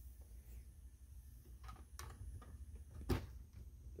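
Faint steady low hum of an AC servo motor and rotating gearbox actuator turning slowly clockwise on its calibration run, with a few light clicks and one sharper click about three seconds in.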